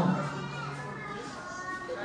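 A man's voice holding one long low note that fades out over about a second and a half, over children's voices and chatter in the crowd.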